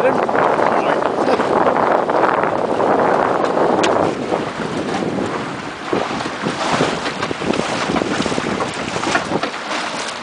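Wind buffeting the microphone over the rush of water along the hull of a Wayfarer sailing dinghy under way in a breeze. The noise is loudest in the first few seconds and eases a little later, with a few short splashes or knocks near the end.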